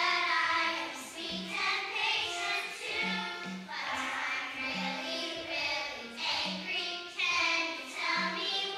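A group of young children singing a song together on stage.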